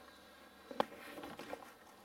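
Faint handling sounds: a few light knocks and rustles, with one sharper click just under a second in, as a plastic trial jar is set over the funnel on the reaction jar.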